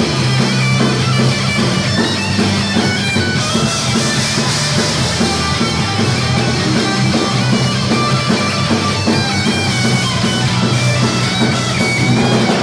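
Live punk rock band playing loud, with distorted electric guitar and bass guitar holding steady low notes.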